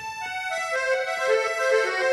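Hohner Panther diatonic button accordion playing an unaccompanied melody of quick, stepping notes.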